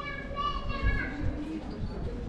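A young child's high-pitched voice calling out once, for under a second, with other people talking in the background.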